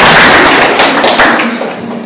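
Audience applauding, a dense patter of hand claps that fades out near the end.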